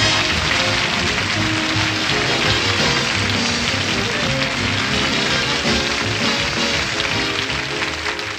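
Studio orchestra playing a short scene-ending play-off, with a steady hiss of audience applause under it.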